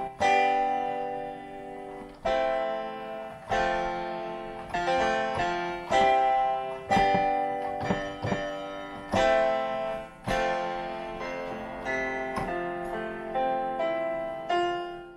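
Chords played on an M-Audio Keystation 49 MIDI controller keyboard, sounding through a GarageBand software instrument on an iPad. The notes are struck and then die away, with a new chord about every second and some quicker notes in between.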